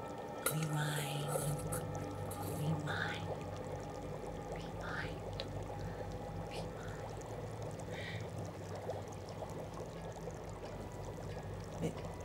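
A low, steady background music drone, with faint liquid pouring and bubbling sounds and soft whispering every couple of seconds.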